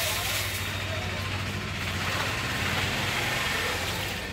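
An engine or motor running steadily with a low hum, under a continuous hiss.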